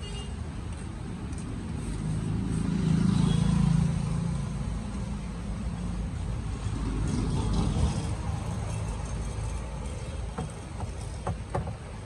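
Street traffic: a low engine rumble that swells as vehicles pass, loudest about three seconds in and again around seven to eight seconds, with a few light knocks near the end.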